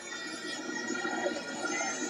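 Football ground ambience: faint distant voices and music from the stands, with a few steady tones running through it.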